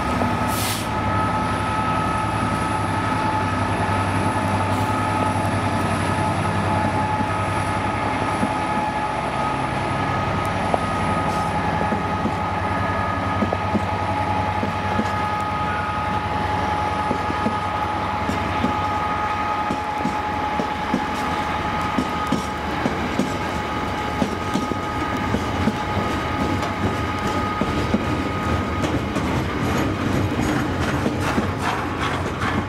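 Class 66 diesel locomotive's two-stroke V12 engine running as it hauls a container freight train past. The engine note fades after about ten seconds while the container wagons roll by with a steady high whine from the wheels and a quickening clatter of wheels over rail joints.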